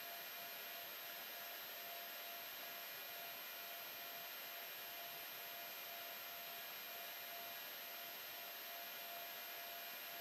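Faint, steady background hiss with a thin, even high whine and a faint mid-pitched tone underneath; nothing else happens.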